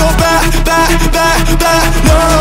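Italian pop track in a stretch without lyrics: an electronic beat with a deep kick about twice a second, each hit dropping in pitch, under a wavering melodic line.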